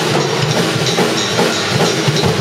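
Drum kit and electric bass playing together live, the drums in a busy, even stream of strokes over the bass notes.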